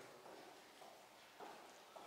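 Near silence: faint room tone with one soft click about one and a half seconds in.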